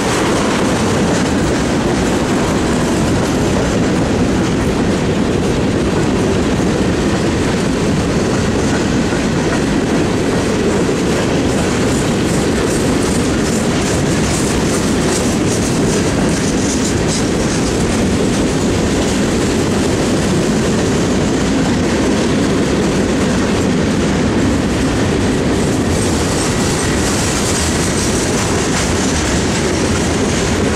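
Freight train's covered hopper cars rolling past: a steady, loud rumble of steel wheels on the rails with a running clickety-clack as the wheels cross rail joints.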